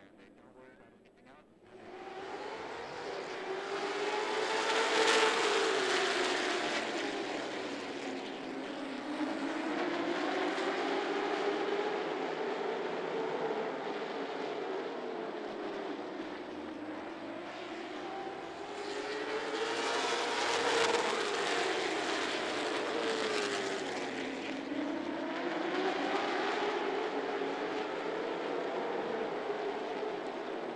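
A field of late model stock car V8 engines running laps together, starting about two seconds in. The pitch rises and falls over and over as the cars accelerate down the straights and lift for the turns, and the pack passes loudest about five seconds in and again about twenty seconds in.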